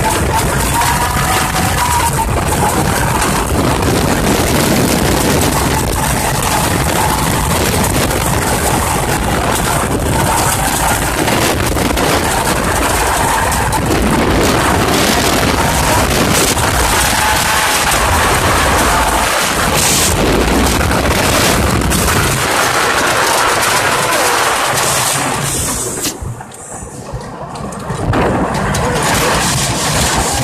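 Wooden roller coaster train running at speed along its track, a continuous loud rattle and rush of wind over the microphone, dropping away briefly near the end.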